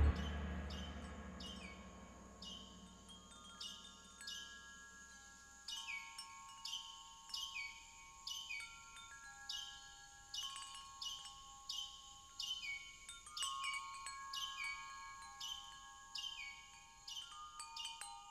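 The band's last chord dies away over the first two seconds, then wind chimes ring on alone: irregular light strikes, one or two a second, with their high tones hanging on underneath.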